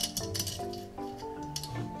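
Soft background music with steady held notes, with a few light metallic clinks near the start from valve-spring parts being handled on a motorcycle cylinder head.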